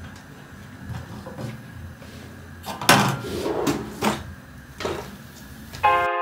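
Kitchen clatter: a handful of short knocks and bangs over a low steady background, the sharpest about three seconds in.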